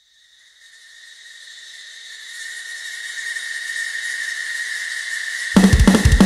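Opening of a thrash metal song: a high, hissing swell with a steady whistling tone fades in and rises for about five seconds, then the full drum kit and band come in about five and a half seconds in.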